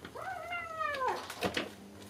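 A kitten meowing once, a high call of about a second that rises and then slides down in pitch, followed by a couple of short knocks.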